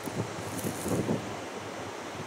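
Wind blowing on the microphone, over a steady rush of ocean surf.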